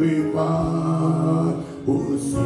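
A man's voice singing a slow, chant-like hymn phrase into a microphone, holding one long steady note for about a second before a short break and the next note.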